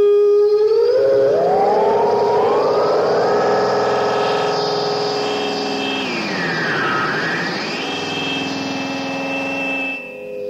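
Electronic drone from a death metal demo's outro: a held synthesizer tone that bends upward into several diverging pitches over the first three seconds, holds, then swoops down and back up about seven seconds in, like a siren.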